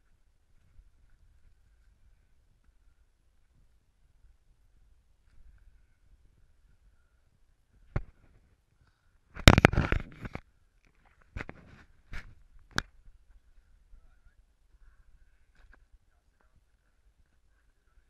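Handling noise on a body-worn action camera as the rider moves in his leather suit on rough ground: a sharp knock, then a loud scraping rustle lasting about a second, then three more quick knocks a second or so apart. Otherwise only a faint low rumble.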